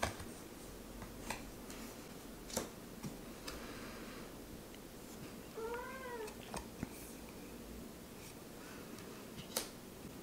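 A cat meows once, softly, about six seconds in; the call rises and then falls in pitch. Faint clicks and slides of tarot cards being handled come now and then.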